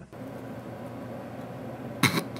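Steady low electrical hum with a hiss of background noise.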